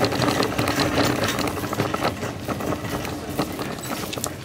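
Rustling and many quick clicks of handling noise from a handheld camera carried while walking, over a faint steady low hum.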